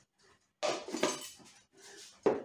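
Salt and pepper being put onto a plated poached egg: a few short, scratchy strokes starting about half a second in, after a near-silent start.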